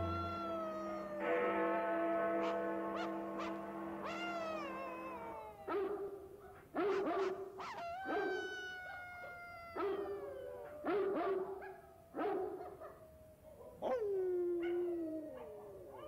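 Distant dogs howling and barking in long, pitch-gliding calls, passing news from dog to dog across the city. In the first five seconds the calls sound over sustained low music tones. After that comes a string of separate barks and howls roughly every second, the last one falling in pitch.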